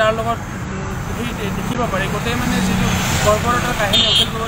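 A man talking over steady road-traffic noise, a continuous low rumble of passing vehicles.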